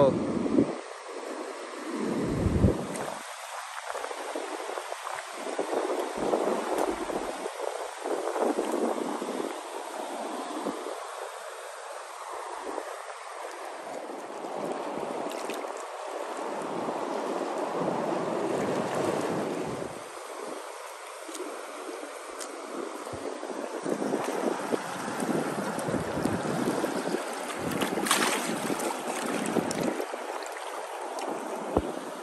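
Shallow sea water washing in and out around shore rocks, swelling and ebbing every few seconds, with wind buffeting the microphone. A short sharp click near the end.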